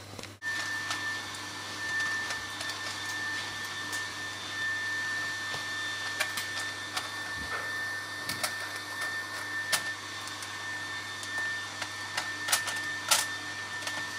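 Sugar-glazed bacon sizzling on a hot foil-lined baking tray fresh from the oven: a steady hiss with scattered sharp pops and crackles of spitting fat, over a faint steady high whine.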